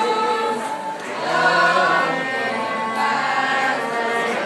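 A mixed choir of teenage voices singing in unison, sustained notes with vibrato, with a short break between phrases about a second in. A cello plays low held notes beneath the voices.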